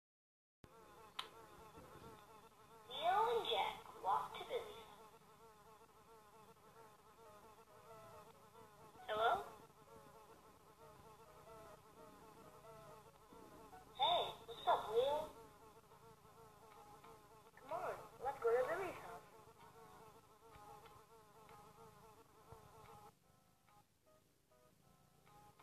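Cartoon sound effects: a steady insect-like buzzing drone, broken four times by short bursts of squeaky gliding calls, until the drone drops away near the end.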